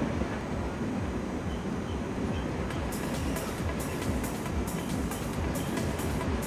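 Low, steady rumble of an SBB Re 460 electric locomotive and double-deck coaches rolling slowly over station trackwork. About three seconds in, electronic music with a regular ticking beat comes in over it.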